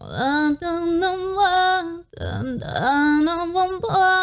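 A young woman's solo pop-ballad vocal, played back from a live stage performance: two long held sung phrases with a short break about halfway. The singing is stylised, 'singing in cursive', with quite a lot of vocal fry.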